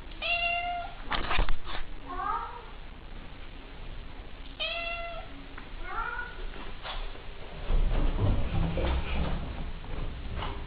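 Cat meowing four times: two longer meows held on one pitch and two shorter ones that bend in pitch. A few sharp knocks come about a second in and are the loudest sound, and a low rumbling noise follows in the last few seconds.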